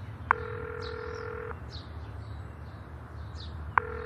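Telephone ringback tone heard by a caller waiting for an answer: a click and then a steady two-pitch ring lasting about a second, and a second ring starting near the end. Faint bird chirps sound behind it.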